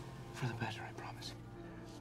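A soft whispered voice over a sustained, held-note music score.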